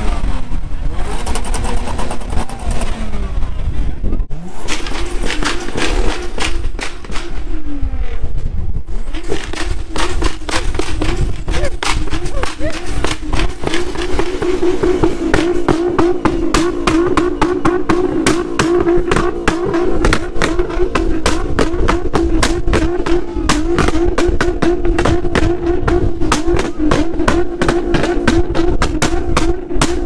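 A car engine held at high revs, a steady drone from about nine seconds in, with a rapid crackle over it that grows denser.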